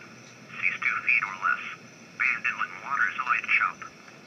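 NOAA Weather Radio forecast on 162.450 MHz, a voice reading the weather, played through the Bearcat 101 scanner's built-in speaker. It comes in two phrases and sounds thin, with no bass, as a small receiver speaker sounds.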